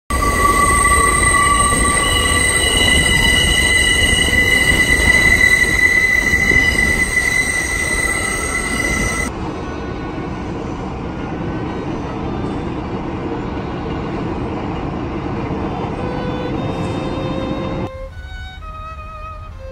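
Elevated subway train running over a steel trestle, its wheels squealing with steady high-pitched tones over a loud rumble. About nine seconds in, the sound cuts to a quieter, steady rumble, and string music fades in near the end.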